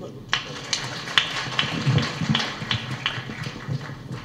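Audience applauding, with single sharper claps standing out about two or three times a second over a steady patter, and crowd voices faintly beneath.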